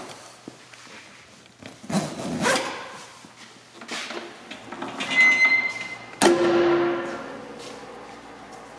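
Rear door of a Land Rover Defender 90 being handled with a few knocks and rattles, then shut with one sharp slam about six seconds in, the metal door ringing briefly afterwards.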